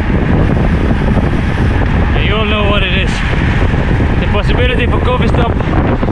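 Wind buffeting the microphone of a camera carried by a cyclist riding a road bike at speed: a steady, loud rumble, with snatches of voices coming through about two seconds in and again near the end.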